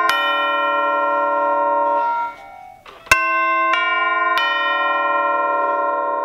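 Orchestral chimes (tubular bells) struck with two hammers, several tubes ringing together as a sustained chord. About two seconds in the ringing is damped off abruptly. Then three more strokes, under a second apart, build up a new ringing chord.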